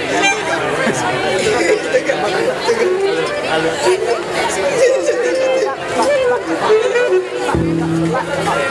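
Audience and band members chattering between songs, with scattered instrument sounds from the band on stage. A steady held note comes in shortly before the end.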